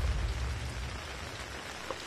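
A deep rumbling whoosh of a news graphic transition fades out over the first half second. It gives way to a steady hiss like rain falling around an outdoor field microphone.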